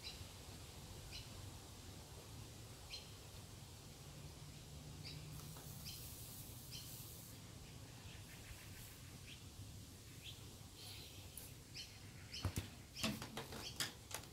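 A bird chirping faintly, with short chirps every second or two over a quiet outdoor background. A few sharp clicks and knocks come near the end.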